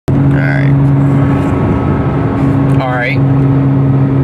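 Porsche Cayman S engine droning steadily with tyre and road noise, heard from inside the cabin while cruising on the highway. A brief rising voice sound comes about three seconds in.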